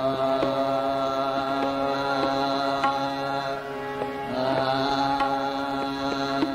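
Hindustani classical vocal music: a male singer holds a long steady note, breaks off a little past halfway, then takes up a note again, over a few sparse tabla strokes.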